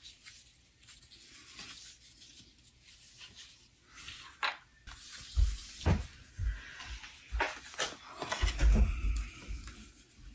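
Hands working a fabric strip and vinyl piece on a wooden sewing table: faint rustling and small clicks at first. About halfway through come a run of knocks and low thumps, the loudest about a second and a half in from the halfway point and again near the end, as the strip is folded and pressed down and a ruler is laid on it.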